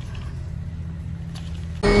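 A steady low rumble with no other sound. Near the end it cuts suddenly to an animated film's race soundtrack: race car engines and music.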